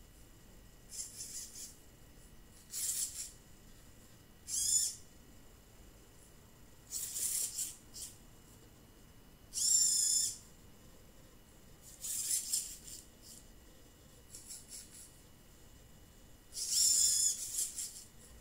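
Hobby servo motors in a metal humanoid robot's arms whining as the arms move to new positions. There are about eight high-pitched bursts, each a second or less and slightly wavering in pitch, over a faint steady high hum.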